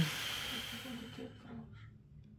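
A person's long breathy exhale, a hiss that fades away over about a second and a half.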